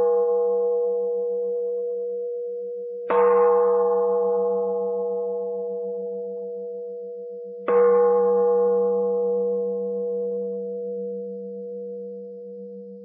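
A bell struck twice, about three seconds and seven and a half seconds in. Each strike rings on and slowly fades with a steady tone over a wavering low hum, and the ring of a strike made just before fills the opening seconds.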